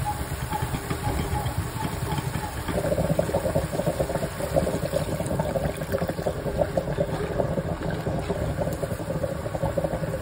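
A pot of stew boiling hard, a steady bubbling and burbling that gets louder from about three seconds in.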